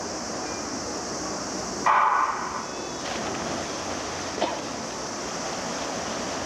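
Electronic starting horn of a swimming race sounding one short beep about two seconds in, setting off the swimmers from the blocks. Steady high hiss of outdoor pool ambience runs underneath.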